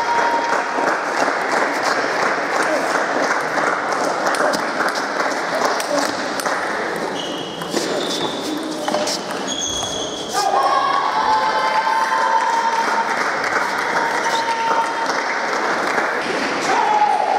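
Busy table tennis hall: a steady babble of many voices, with sharp clicks of celluloid balls struck by paddles and bouncing on tables from several matches at once. A few brief high squeaks come in the middle.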